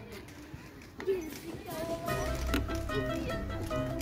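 Background music, quiet at first, with held notes over a low repeating beat coming in after about a second and a half.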